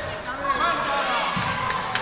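Shouting voices of players and spectators echoing in an indoor futsal hall, with a few sharp knocks on the hard court near the end.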